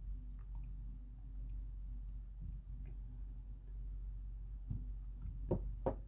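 A steady low hum with faint scattered clicks, then two or three soft, short knocks close together near the end.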